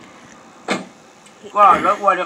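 A short, sharp noise about two-thirds of a second in, then a man's voice speaking loudly from about a second and a half in, over a faint steady hiss.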